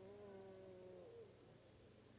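Faint, long held vocal note from a person praying, wavering slightly, then bending down in pitch and trailing off a little over a second in, over a low steady hum.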